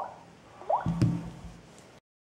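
Samsung Galaxy Note smartphone being tapped through its reboot menu and shutting down. There are two short rising chirps, then a brief low buzz with a click about a second in.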